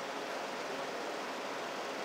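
Steady hiss of room and microphone noise in a pause between spoken phrases, with no distinct event.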